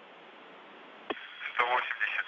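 Steady hiss of an open, narrow radio voice link. About a second in there is a click, and a man's voice starts coming through the radio half a second later.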